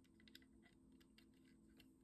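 Near silence with a few faint light clicks: a microSD card being slid and pushed into the card slot of a Raspberry Pi 4 in a FLIRC case.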